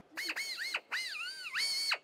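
Right-angle pneumatic drill running free in short spurts, its high whine dipping and rising in pitch as the speed changes.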